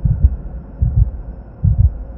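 Heartbeat sound effect: low double thumps, one pair about every 0.8 seconds, over a steady low hum.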